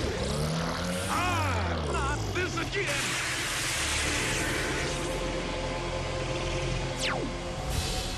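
Sci-fi cartoon battle sound effects: pitch-bending energy-weapon zaps early on, a dense noisy blast about three seconds in, and a steeply falling whine near the end, over background music.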